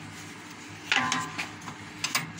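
A wooden stretcher frame handled on the metal table of a frame-stapling machine, with one short knock about a second in and a smaller one after, over a steady low hum.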